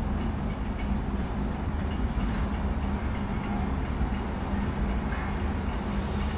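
Steady outdoor background noise: a constant low rumble with a steady hum running underneath.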